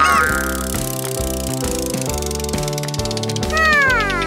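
Upbeat children's background music, over which the spinning pointer of a cartoon colour wheel makes a rapid run of high ticks for about three seconds. A short falling glide of tones comes near the end.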